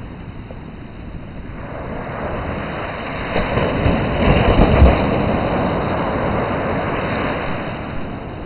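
Ocean surf: the wash of the waves swells as a wave breaks about four seconds in, then eases into a steady rush of foam, with low rumbles of wind on the microphone at the loudest point.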